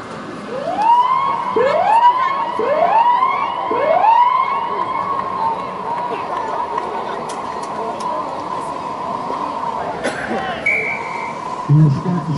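A siren wails: four rising whoops about a second apart, then a long steady tone that gradually fades.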